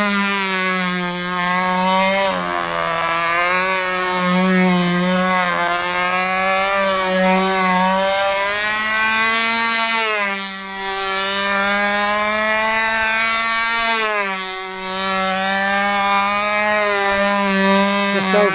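Control-line model airplane's two-stroke glow engine running at high revs in flight: a steady buzzing whine that sags and rises in pitch a few times as the plane circles and manoeuvres.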